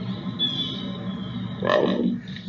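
Recorded leopard sounds: a steady low rumble with a thin high tone early on and a louder call about three-quarters of the way through.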